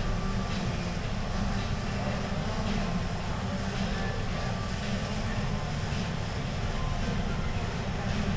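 Steady low rumbling background noise with no distinct events.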